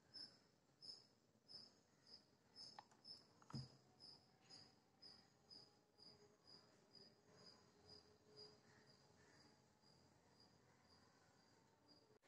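Near silence with faint, regular high-pitched chirps, about two a second, growing fainter and stopping about eight seconds in. There is a soft click about three and a half seconds in.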